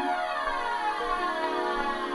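Drum and bass track in a beatless passage: a sustained synthesizer chord with a slow downward sweep running through it, and no drums or bass.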